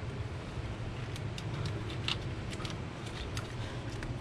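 Scattered light clicks and rattles of a plastic wiring harness and connector being handled in an engine bay, as the electrical plug is worked back onto an oil pressure sensor, over a steady low hum.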